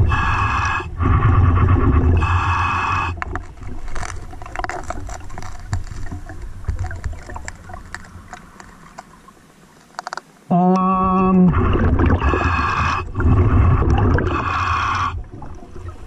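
Scuba regulator breathing underwater: hissing breaths of about a second each, in pairs near the start and again near the end, with fainter bubbling and crackling in between. A little past halfway there is one short, steady low hum lasting about a second.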